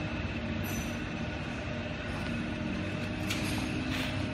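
Steady hum and rumble of machinery running, with a short click about three seconds in.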